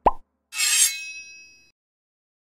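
Cartoon sound effects on an animated logo: a quick rising 'plop' right at the start, then about half a second later a bright sparkling chime that rings and fades over about a second.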